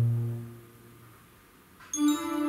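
Yamaha PSR-S950 arranger keyboard playing a slow, soft passage: a sustained low chord fades away over the first second into a brief pause. A new note sounds just before the end.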